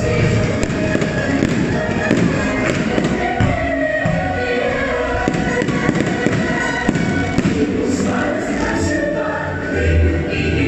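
Fireworks bursting and crackling, a scatter of sharp pops throughout, over a show soundtrack of music with singing voices.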